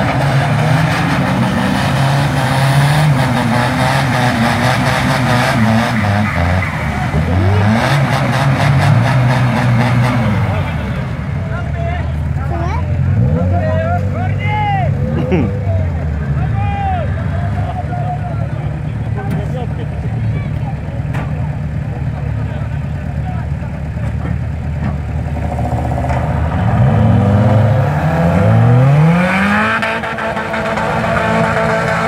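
Engines of off-road rally cars revving hard in a muddy bog, with the pitch repeatedly rising and falling as the drivers push through the mud. Near the end there is a sharp climb in revs.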